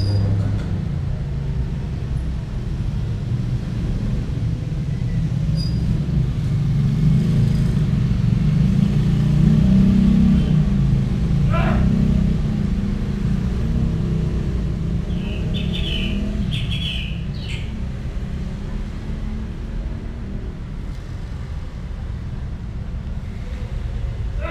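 A low rumble that swells for about ten seconds and then slowly eases off, like passing traffic, with a few short high chirps partway through.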